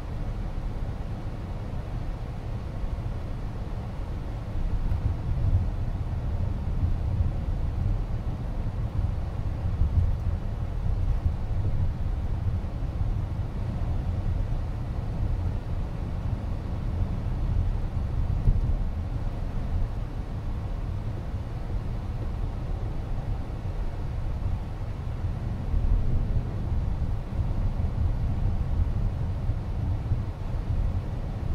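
Road and tyre noise inside the cabin of a Chrysler Pacifica Hybrid minivan driving along a road: a steady low rumble that grows a little louder about four to five seconds in.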